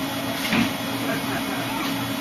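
Steady mechanical hum and noise of a restaurant interior, with faint background voices and a brief louder sound about half a second in.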